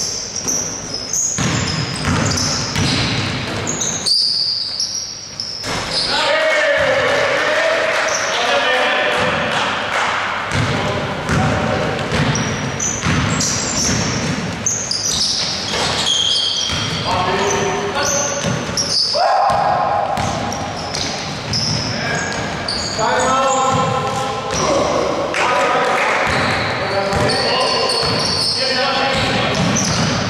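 A basketball bouncing repeatedly on a wooden gym floor during live play, with players' shouts and calls, all echoing in a large indoor hall.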